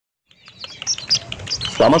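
Red junglefowl chicks peeping: a fast run of short, high chirps.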